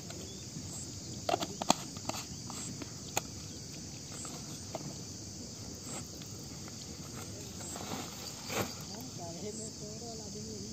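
Steady high insect chorus, crickets, with a few sharp clicks and knocks about a second in and again near the end as a jar and plastic bottle are handled.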